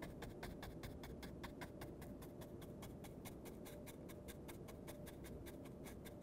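Paintbrush working on a stretched canvas in quick short strokes: a faint, fast, even run of scratchy brush sounds, about seven a second.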